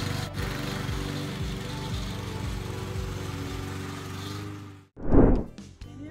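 Gasoline walk-behind lawn mower engine running steadily as it is pushed across a snowy lawn. The engine sound cuts off suddenly near the end, and a brief loud burst of sound follows.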